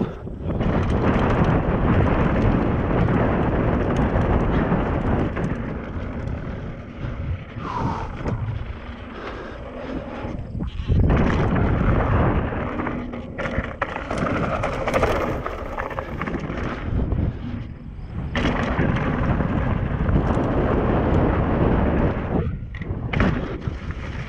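Hardtail mountain bike riding fast down a dirt bike-park trail: a continuous rumble of the tyres on dirt and the rattle of the unsuspended frame and chain over rough ground, mixed with wind on the microphone. The noise drops away briefly a few times.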